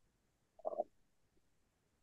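Near silence, broken briefly well under a second in by a man's short hesitant 'uh'.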